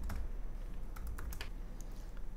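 Typing on a computer keyboard: a run of irregularly spaced key clicks as a password is typed in.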